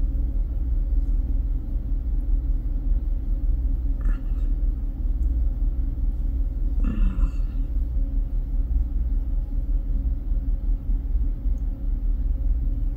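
Steady low rumble and hum in the room, with a short murmur of voice about seven seconds in.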